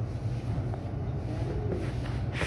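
Steady low droning background noise of a large store interior, with no distinct event standing out.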